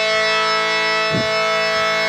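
Harmonium holding one steady chord, its reeds sounding a sustained drone that does not change in pitch.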